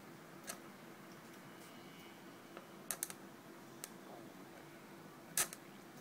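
Felt-tip marker on paper as letters are drawn: a few short, sharp taps as the tip meets the paper, the loudest about five and a half seconds in, over a faint steady hum.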